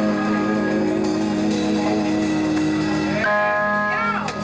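A rock band jamming in a small room, with electric guitar and electric bass holding sustained notes. A new, higher chord comes in about three seconds in.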